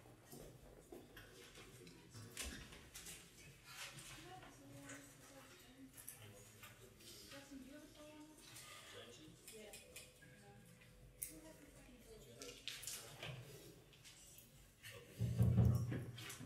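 Quiet pause between pieces: faint murmuring voices, shuffling and small clicks from the room and stage, with a louder low thump about a second before the end.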